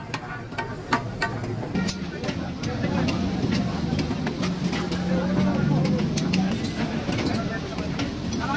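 Metal tongs and a ladle clinking against steel cooking pans and bowls in a series of short, sharp clicks. Behind them are voices and a low, steady hum.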